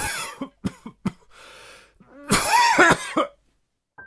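A person coughing: a few short, sharp coughs, an audible breath, then a louder, longer, rasping cough a little past halfway, which stops well before the end.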